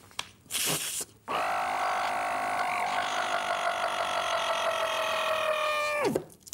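A man's vocal sound effect: a long, steady, machine-like buzzing whine held for several seconds, its pitch slowly sinking, then cut off suddenly at the end. A short hiss comes just before it.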